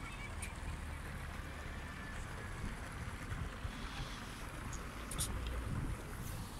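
Steady, low outdoor rumble, with a few faint clicks near the end.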